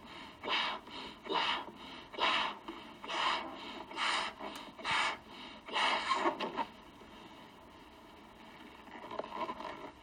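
A person blowing up a rubber balloon by mouth: about eight loud, breathy gusts of breath, roughly one a second, that stop about two thirds of the way through, followed by a quieter stretch.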